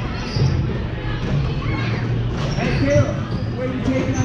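A basketball being dribbled on a gym floor, several irregular thuds, with voices of players and spectators around it.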